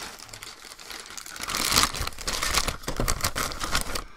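Thin plastic parts bags from a 1/25-scale model car kit crinkling and tearing as they are sliced open and the parts pulled out, loudest through the middle.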